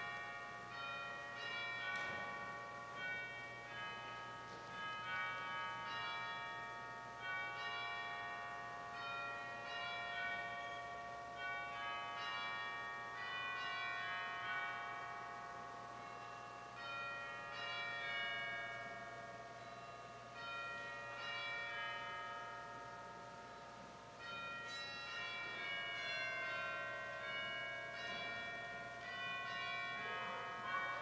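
Bells ringing a long run of struck notes that ring on and overlap, in waves that swell and fade, with a fresh peal starting about 25 seconds in.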